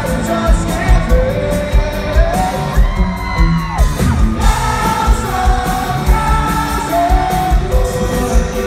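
Live pop-rock band with a lead singer performing to a crowd, heard from within the audience in a large hall, over a steady kick-drum beat. The band's sound thins out briefly about halfway through, then comes back. Fans yell along.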